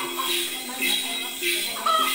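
Then ritual singing: a woman's voice chanting in long held notes over a bunch of jingle bells shaken in a steady beat, a jingle about every half second or so.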